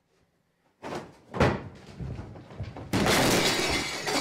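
A table laid with a tea set crashing over: a loud bang about a second and a half in, clattering and breaking crockery, then a long loud crash near the end that cuts off suddenly.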